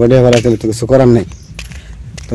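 A man's voice singing held, wavering notes in two phrases, the second ending about a second and a half in, with faint light jingling clicks alongside.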